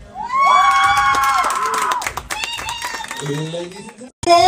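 Audience cheering and applauding: high, drawn-out whoops in the first second and a half over steady scattered clapping, with more voices calling out near the end.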